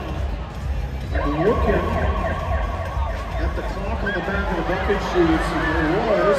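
Indoor arena ambience: a steady crowd and public-address rumble. From about a second in, a held high tone lasts about two seconds, with several short gliding pitches rising and falling over it.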